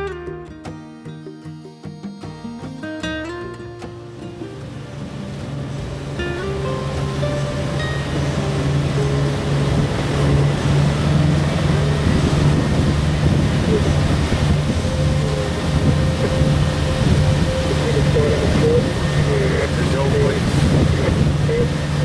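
Guitar music fading out over the first few seconds, giving way to a sailing yacht's inboard diesel engine running steadily under way, mixed with wind on the microphone and water rushing past the hull; the engine and water noise swell over the first several seconds and then hold steady.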